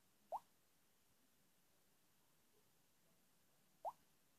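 A Hisense U972 smartphone's touch-feedback sound as on-screen setup buttons are tapped: two short blips that rise in pitch, about three and a half seconds apart. In between, near silence.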